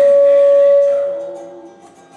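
A man's voice holding one long sung note over acoustic guitar, cut off about a second in; the guitar strings ring on quietly and fade.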